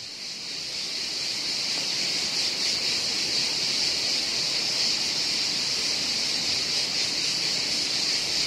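Steady high-pitched buzz of cicadas, fading in over the first second or so and then holding level.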